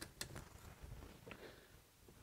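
Faint, irregular ticks and light scraping from an 1890 Millers Falls breast drill being hand-cranked, its gears turning and a one-inch spade bit cutting into a wooden board.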